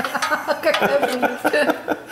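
Voices talking, with some chuckling; no other sound stands out.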